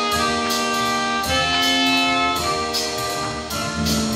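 School jazz band of saxophones, trumpets and trombones playing held chords that change every second or so, over a regular beat of sharp percussion strikes.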